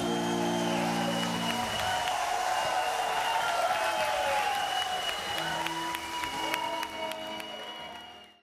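A concert audience applauding and cheering as the band's last held chord dies away about two seconds in. The applause fades out at the end.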